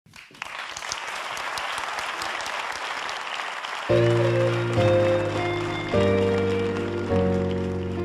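Audience applauding, then about four seconds in a song's introduction starts: sustained chords that change about once a second, with the applause dying away under them.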